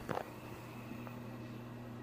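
Quiet room tone between words: a steady low hum, with the tail of a spoken word right at the start.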